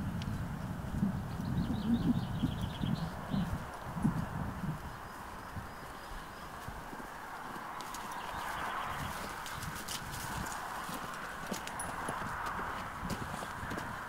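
An Arabian horse walking on grass: dull hoof thuds over the first few seconds, then quieter, with a faint steady hiss behind.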